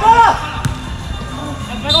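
Indoor soccer game: a player's short shout at the start and another near the end, with a sharp knock of the ball a little over half a second in.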